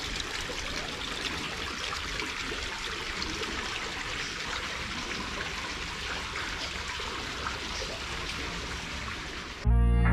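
Water running steadily down a rock-lined channel, a constant trickling rush. Electronic music cuts in near the end.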